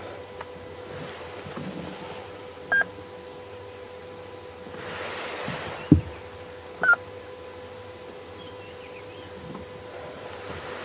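Quiet dawn bush ambience with a couple of short whistled bird notes, about three seconds in and again near seven seconds, over a steady electrical hum. A single low thump comes just before the middle.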